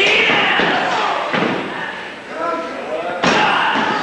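Thuds on a wrestling ring's mat: three impacts, about half a second in, just over a second in and just after three seconds, the last two heaviest, as a wrestler hits and stomps her downed opponent. Spectators shout over them.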